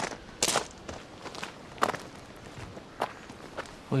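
Footsteps of a man walking on a gravel path, a series of single crunching steps at a steady walking pace.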